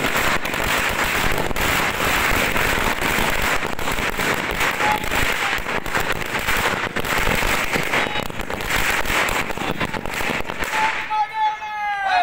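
A long string of firecrackers going off on the ground: a rapid, continuous run of sharp cracks for about eleven seconds that stops suddenly. A man's voice shouts as it ends.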